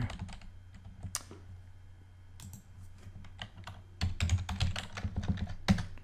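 Computer keyboard typing: scattered keystrokes at first, then a quicker run of key clicks from about four seconds in.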